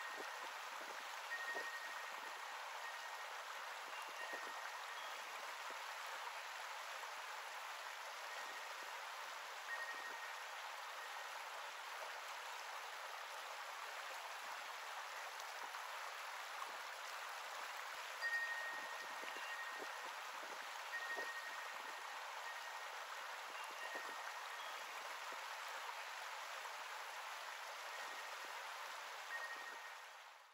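Creek water running steadily over rocks, with a wind chime ringing faintly now and then, its tones clustered near the start and again about two-thirds through.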